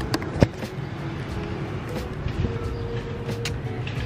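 Outdoor city ambience from a balcony: a steady low hum of distant street traffic, with a couple of sharp clicks in the first half second.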